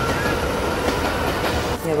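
A train running past, a steady rumble and clatter with a thin, steady high tone over it. It cuts off abruptly near the end, replaced by a voice.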